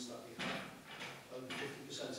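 A man speaking over a microphone, with two short noisy scrapes about half a second and a second and a half in.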